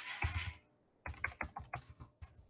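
Computer keyboard being typed on, fast keystrokes in two quick runs with a brief pause in the middle.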